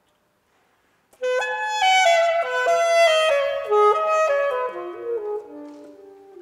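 Solo saxophone. After about a second of silence, a loud phrase begins with a sharp attack and moves down in quick stepwise notes, getting softer toward the end.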